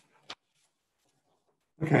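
A single faint click shortly after the start, then near silence, then a man's voice saying "Okay" near the end.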